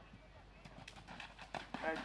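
Hoofbeats of a horse galloping on turf: a run of irregular thuds starting about half a second in and growing louder. A commentator's voice comes in at the very end.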